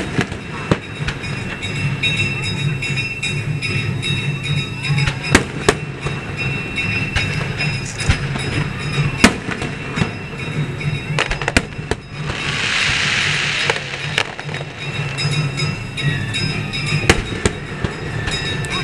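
Aerial firework shells bursting overhead: about a dozen sharp bangs spread irregularly, some in quick pairs. A rushing hiss lasts just over a second about twelve and a half seconds in.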